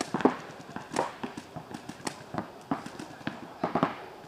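Paintball markers firing in short, irregular bursts of rapid sharp pops.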